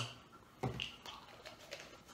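A few faint taps and clicks from a small plastic pill bottle being handled and its cap twisted, with one slightly louder knock about half a second in.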